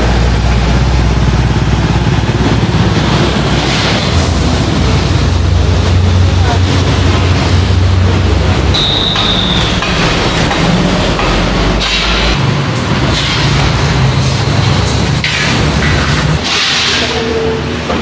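Loud road traffic with a heavy truck passing close, a low engine drone under a rushing noise; the drone eases off after about twelve seconds and drops away near the end.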